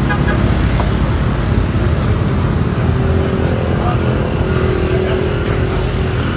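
Steady low rumble of nearby road traffic, with a steady engine hum standing out from about halfway through to near the end.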